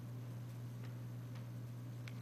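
Quiet room tone with a low steady hum and three faint ticks as hands move over paper drawings on a table.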